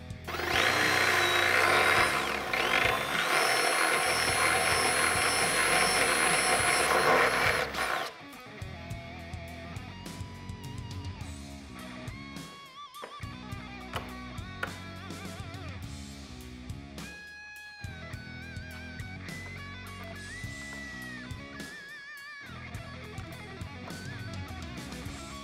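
A power drill runs for about seven seconds, its whine shifting in pitch, over background guitar music. The music carries on alone after the drill stops.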